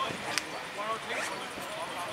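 Distant shouts and calls of players on a rugby pitch over open-air background noise, with one sharp click about a third of a second in.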